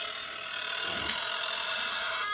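Eerie electronic sound effect playing from a novelty sound chip in a Halloween-themed nail polish package: several steady held tones sounding together, with a short click about a second in.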